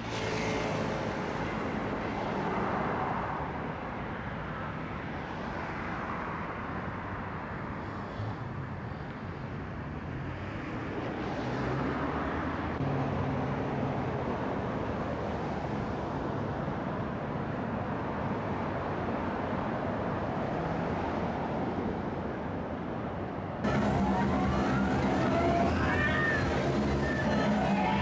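City street traffic noise: a steady wash of passing cars, with engine tones rising and falling. Near the end it cuts abruptly to a louder sound with a rising whine over steady low tones.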